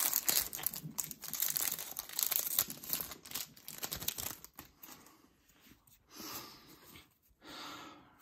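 Foil wrapper of a Yu-Gi-Oh booster pack being torn open and crinkled by hand for the first four to five seconds, then a couple of brief, softer rustles.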